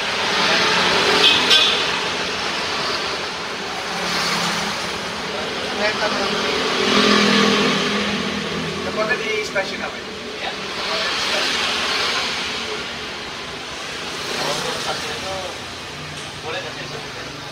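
Road traffic passing by: several vehicles go past one after another, each a swell of engine and tyre noise that rises and fades over a second or two, with low talk in between.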